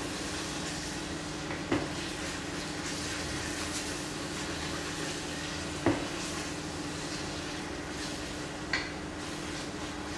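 Onion-and-spice masala sizzling in a nonstick pot as it is stirred and sautéed down with a spatula, over a steady low hum. The spatula knocks against the pot three times, a few seconds apart.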